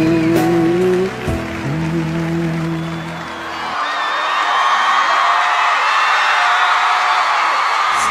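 The music holds a final chord that cuts off about four seconds in. Then a theatre audience applauds and cheers.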